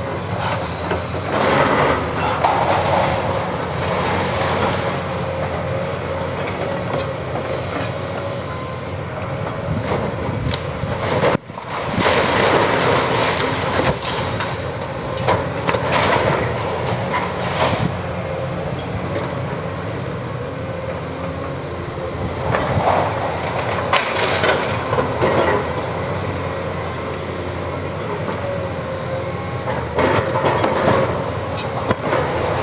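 Caterpillar 329E hydraulic excavator running under load with a steady whine, its demolition jaw crunching and tearing at concrete block and sheet metal, with repeated crashes and clatters of falling debris.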